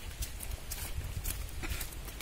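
Footsteps of people walking quickly on a dry dirt path covered with straw and dry leaves: irregular crunching steps a few times a second, with a low rumble underneath.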